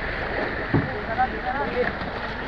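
Sea water sloshing at a fishing boat's side as the crew haul a net from the water, with a thud a little under a second in.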